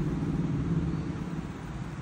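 A low, steady motor rumble that eases off a little after the first second.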